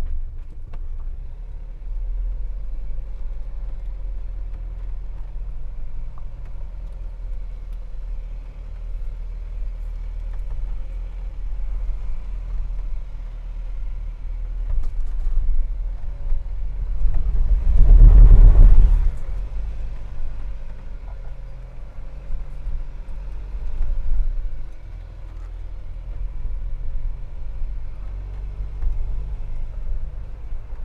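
Jeep Wrangler Rubicon engine running at low revs as the short-wheelbase 4x4 crawls up a steep rock step. A louder surge comes about seventeen seconds in, where the tyres slip and scrabble on the rock before it climbs on.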